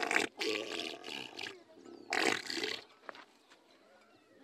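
A man blowing hard into a cow's vulva in three breathy blasts of air, the second the longest. This is done to a cow that has lost its calf, to bring down its milk.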